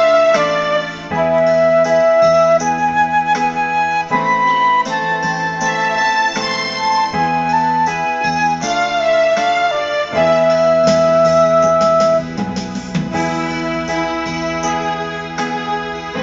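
A concert flute and an electronic keyboard playing a duet. The flute carries the melody with several long held notes over the keyboard's chordal accompaniment.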